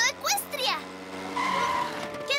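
Cartoon characters' high voices speaking briefly, then a short steady high-pitched squeal near the end.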